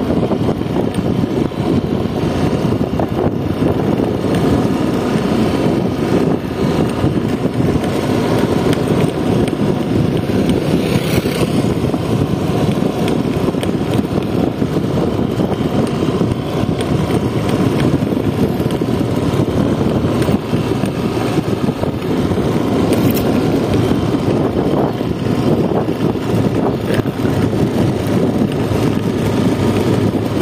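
Steady engine drone and wind rush heard from on board a motorcycle riding at an even speed along a road.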